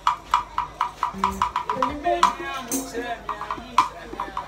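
Sharp, irregular taps on a drum kit, several a second, as it is checked during setup, with voices talking midway.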